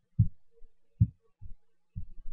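Four dull, low thumps, irregularly spaced, with a faint hum between them.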